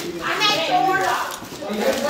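Overlapping, indistinct voices, a child's voice among them.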